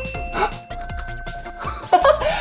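A desk service bell rings about a second in, a bright ding that fades out, over background music.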